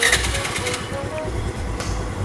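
Motor scooter's small engine running at idle, a low uneven rumble.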